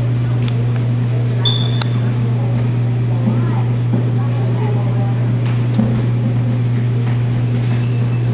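A loud, steady low hum with faint, indistinct voices murmuring beneath it, and a short high-pitched tone about one and a half seconds in.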